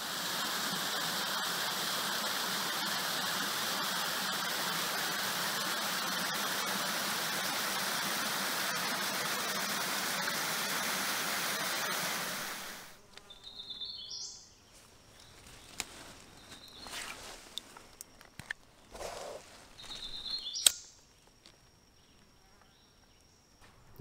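Small waterfall spilling over layered rock ledges into a creek: a steady rush of water that cuts off suddenly about halfway through. After it, quiet woods with a few clicks and two short high chirps.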